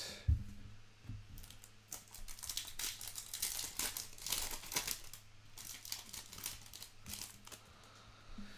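Foil trading-card pack wrapper being crinkled and torn open by hand: a soft bump near the start, then a dense run of sharp crackles through the middle few seconds that thins out toward the end.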